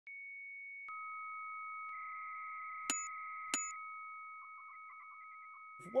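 Synthetic electronic tones: a steady high beep, joined by a second, lower beep about a second in, with two sharp clicks about three seconds in. The tones then break into quick stuttering beeps and fade.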